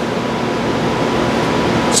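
Steady room noise: an even hiss with a faint, constant hum, like a ventilation or air-conditioning system running.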